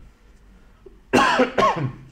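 A man coughing into his fist: two short coughs about half a second apart, starting about a second in.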